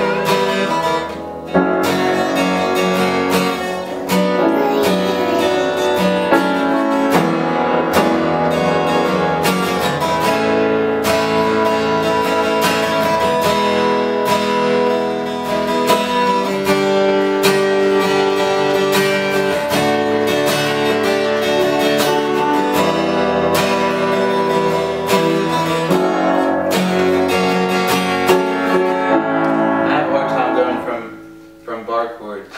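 Acoustic guitar strummed together with a piano, the two playing an informal song.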